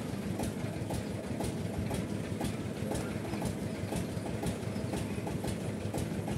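A machine running steadily nearby: a low rumble with a regular click about twice a second.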